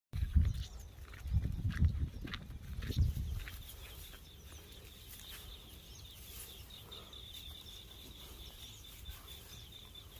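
Low thumps and rumbling for the first three seconds or so, then a steady high-pitched trill that holds through the rest.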